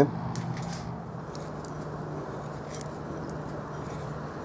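Brass bushing bore being deburred by hand with a small deburring tool: faint, scattered scraping ticks over a steady low hum.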